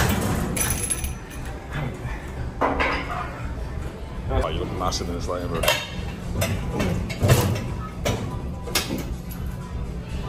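Gym ambience: metal weights clink and clank several times, sharp short hits mostly in the second half, over background voices and a steady low hum.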